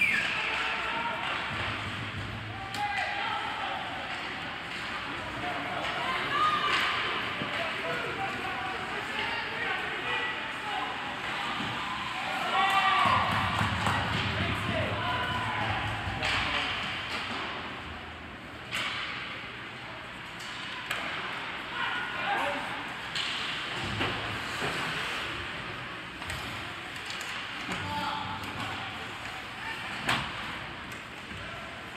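Youth ice hockey game sounds in an arena: voices shouting and calling out across the rink, with scattered sharp clacks and thuds of sticks, puck and boards.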